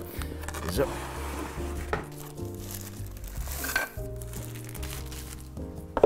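Cardboard box flaps and a molded pulp packaging insert rustling and scraping as a coffee grinder is unpacked by hand, with a few sharper handling knocks, over steady background music.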